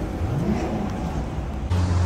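Street traffic noise: car engines running in slow traffic, one briefly rising in pitch about half a second in. Near the end it gives way abruptly to a steady low hum.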